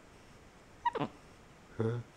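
A black-capped capuchin monkey gives one short call about a second in, sliding steeply down in pitch. A man's brief "huh?" follows near the end.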